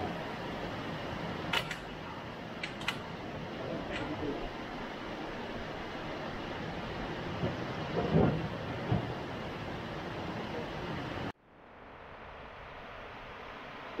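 Steady rushing of water spilling over a low dam, with a few sharp clicks and, about eight seconds in, a couple of dull knocks. Near the end the sound cuts off abruptly and a quieter rushing fades back in.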